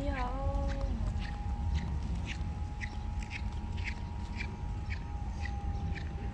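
Short high animal chirps repeating about twice a second, after a brief gliding voiced call in the first second, over a faint steady tone and low background rumble.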